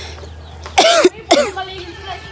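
A person coughing twice, about half a second apart, a little under a second in.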